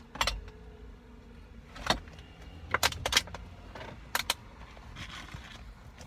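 Small hard objects being handled and rummaged through inside a car, giving about six sharp, irregular clicks and rattles over a low steady rumble.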